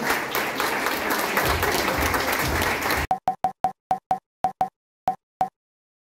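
Audience applauding, cut off abruptly about three seconds in. Then about ten short pop sound effects at an uneven pace, each with a faint tone, over silence.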